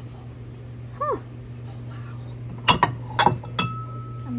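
China bowls clinking against each other four times in quick succession as they are handled and set down among stacked dishes, the last knock leaving a thin ringing tone. A steady low hum runs underneath, and a brief rising-and-falling whine comes about a second in.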